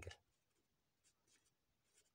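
Faint scratching of a pen writing on paper, a few light strokes about a second in, in near silence.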